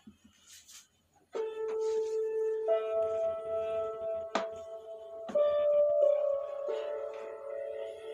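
Slow, calm music of long held notes played through the Bluetooth speaker built into an Astomi Sound aroma diffuser, starting about a second in after a few faint taps. A single sharp click comes about four seconds in.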